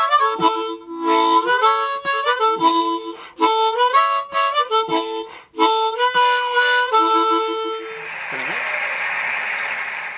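Diatonic harmonica played in short phrases of chords and single notes, with brief breaths between them. About two seconds before the end the playing stops and a steady rushing noise takes over.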